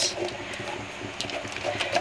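Faint, soft stirring of creamy scrambled eggs with a silicone spatula in a stainless steel pot.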